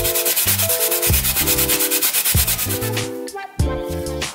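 Raw potato grated on the steel blade of a plastic box grater in quick, even strokes, stopping about three seconds in.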